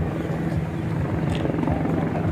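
Helicopter running nearby: a steady low drone of engine and rotor.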